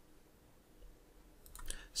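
Near-silent room tone, then a few faint clicks in the last half second, from a computer mouse being clicked.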